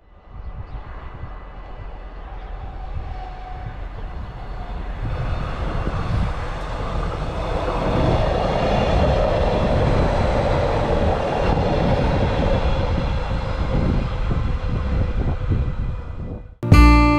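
Arriva Spurt (Stadler GTW) diesel multiple-unit train approaching and passing close by, its engine and wheels on the rails growing steadily louder to a peak about halfway and staying loud as it runs past.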